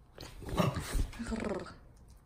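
Cairn Terrier–Schnauzer mix dog growling and whining in play at a toy, one vocal grumble lasting about a second and a half.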